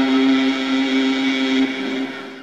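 A man's voice holding one long, steady note in melodic Quran recitation. The note breaks off near the end and fades away.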